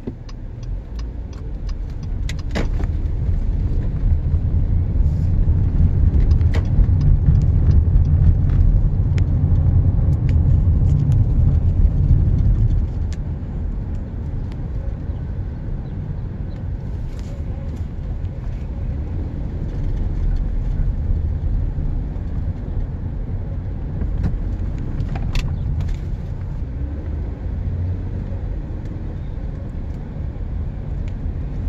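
A car driving through city streets: a steady low rumble of engine and tyres that builds over the first few seconds, holds loud for about ten seconds, then drops to a quieter, even level. A few light clicks sound through it.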